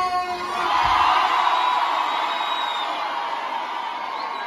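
A large concert crowd cheering and screaming, swelling about a second in and then slowly easing off.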